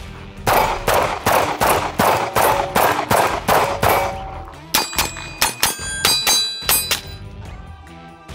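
Handgun fired rapidly while walking, about three shots a second in a string of roughly ten. Then a second string in which each shot is followed by the ring of a hanging steel target plate being hit.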